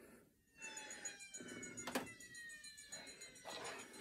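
Faint, slowly falling electronic tones from a television's speakers while it loads, several pitches sliding down together, with a single click about two seconds in.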